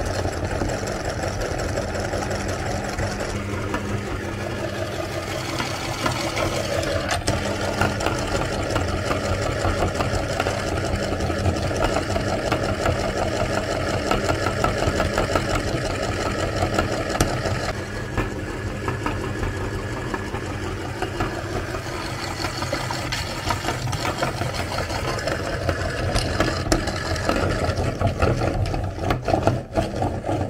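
A motor-driven machine running steadily, with a change in tone about eighteen seconds in.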